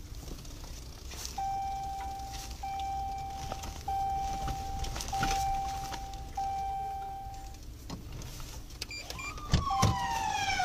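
Low engine and road rumble inside a moving car, with five even electronic beeps of about a second each, all at one pitch. Near the end a police siren starts up, its pitch falling.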